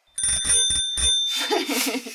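A bell rung in a quick run of four or five strikes, about a second long. A woman then laughs.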